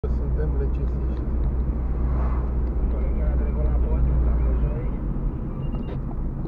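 Car driving, heard from inside the cabin: a steady low rumble of engine and road noise that eases off about five seconds in, with faint talk underneath.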